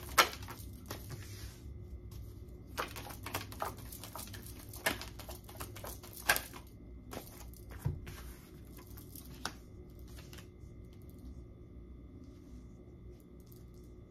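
Tarot cards being shuffled by hand: a run of quick, crisp papery snaps and flicks, the loudest just at the start. After about eight seconds the snaps thin out to a few soft clicks as the cards are handled and laid down.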